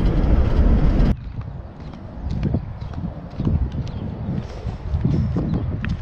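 Car cabin noise from driving, with road and engine rumble, cuts off abruptly about a second in. Irregular soft footsteps on a sidewalk follow, with light wind on the microphone.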